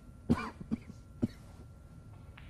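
A person coughing: one loud cough about a third of a second in, followed by two shorter, fainter coughing sounds.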